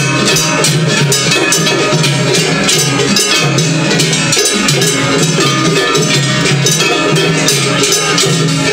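Gion-bayashi festival music played on a float: large hand-held brass gongs struck in a fast, driving rhythm over taiko drums, loud and unbroken.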